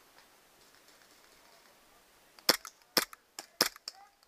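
WE G17 gas-blowback airsoft pistol firing three shots about half a second apart, each sharp pop followed by softer clicks, starting a little past halfway.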